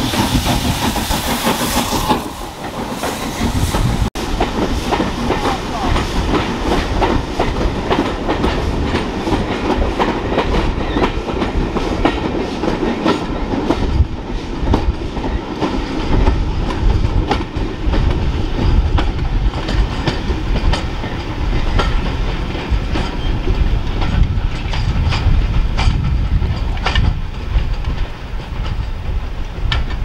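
Passenger coaches of a steam-hauled train rolling past close by, wheels clattering and knocking over rail joints and pointwork. A loud steam hiss from the locomotive fills the first couple of seconds.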